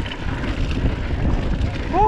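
Wind buffeting the microphone over the rumble and rattle of a mountain bike rolling along a dirt singletrack, with a short voice call near the end.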